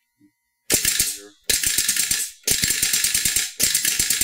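Matt Sweeney's pneumatic Special Effects Capsule Launcher, run off a compressor line, cycling on full auto: four rapid bursts of sharp clicks at about ten shots a second, the first starting just under a second in.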